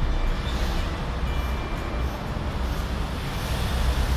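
A steady, even low rumble of background noise with no distinct events.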